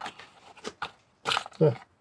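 A few short clicks and taps of a clear plastic case and a cardboard box being handled, followed by a single spoken word.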